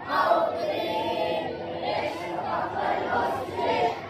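A group of boys singing together.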